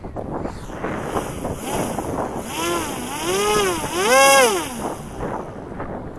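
Small electric RC plane's motor and propeller whining, its pitch rising and falling smoothly several times, loudest past the middle.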